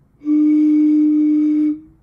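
Breath blown across the mouth of a glass bottle part-filled with water, sounding one steady, breathy flute-like note for about a second and a half. With some of the water poured out, the note sits lower: more air in the bottle lowers the pitch.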